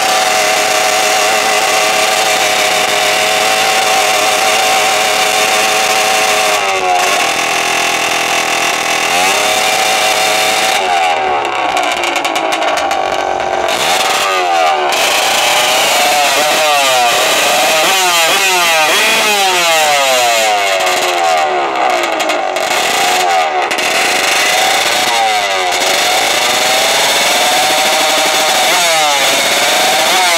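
Small drag-racing motorcycle engine revving hard at the start line. It is held at a high, steady pitch, then blipped up and down in quick repeated sweeps through the middle, then held high again, keeping the revs up ready for launch.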